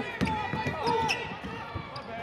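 Basketball being dribbled on a hardwood court, with short sneaker squeaks from players cutting on the floor.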